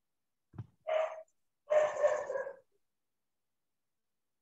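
A dog barking a few times, a short bark about a second in and a longer one around two seconds, heard over video-call audio that cuts to dead silence between sounds.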